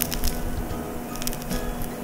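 The crust of a freshly baked baguette crackling as hands squeeze the loaf, in scattered sharp crackles. The crackle shows a very crisp crust, which the baker takes as the sign of fresh bread.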